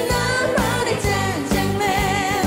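A woman singing an upbeat Korean trot song live, over a band with a steady beat.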